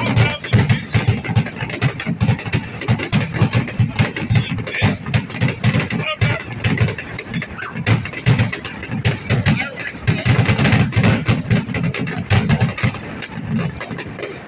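A continuous barrage of aerial firework bursts, several bangs a second with no let-up. Through a phone microphone the bangs come out as sharp, gunshot-like cracks.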